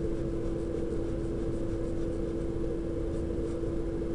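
A steady low hum over background hiss, with the faint scratch of a pen drawing a curve on paper.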